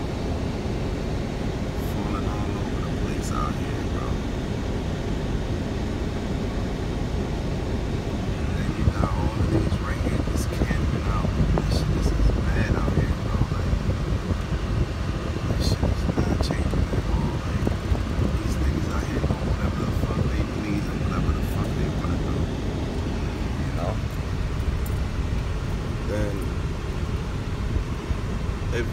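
Steady low rumble of a car's engine and tyres heard from inside the cabin while driving, with faint indistinct voices.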